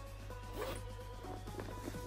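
Zipper of a Louis Vuitton Speedy 30 handbag's inside pocket being pulled open, a brief zip about half a second in, over background music.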